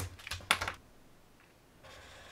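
A few light plastic clicks and taps as pens are handled and put down on a desk, followed near the end by the faint brief swish of a Mildliner highlighter stroked across thin paper.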